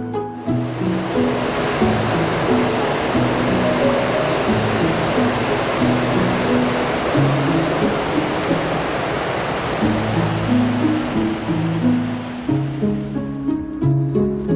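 Water rushing steadily over a river intake weir, fading in about half a second in and fading out near the end. Background music with plucked and bowed string notes plays underneath.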